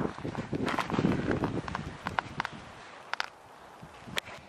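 Footsteps of someone walking on frost-dusted grass and fallen leaves. They are loudest in the first two seconds, then fade, with a few sharp clicks.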